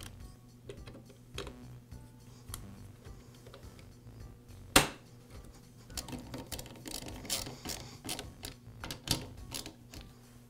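Small plastic clicks and knocks from fitting a chainsaw's air filter base, then a nut driver running its two hex nuts down with light clicks and rattles. One sharper, louder click comes about five seconds in.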